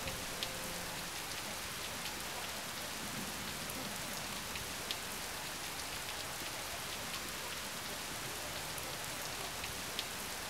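Steady rain falling, with a few sharper taps of single drops landing close by.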